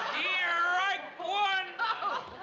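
High-pitched wordless vocal cries: two drawn-out calls that slide up and down in pitch, the first about a second long, the second shorter after a brief dip.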